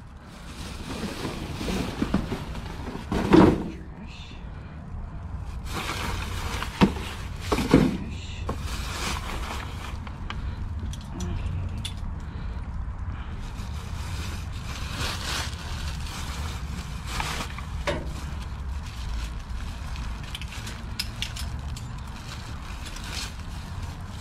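Clear plastic trash bags rustling and crinkling in scattered bursts as an arm reaches down into a metal dumpster, with a sharp knock about seven seconds in, over a steady low hum.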